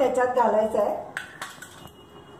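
Stainless-steel kitchen utensils clinking two or three times, about a second in, with a faint ringing after the last one. A woman's drawn-out word comes just before.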